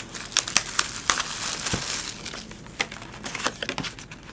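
Plastic shrink-wrap on a cardboard trading-card box crinkling and tearing as it is stripped off by hand. Quick crackles run throughout, with a longer, hissier tear about a second in.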